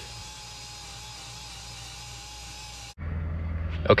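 A small file belt sander running steadily on a rusty metal pipe, a thin whine over a hiss, with a dust vacuum running alongside. It cuts off abruptly about three seconds in, giving way to a low hum.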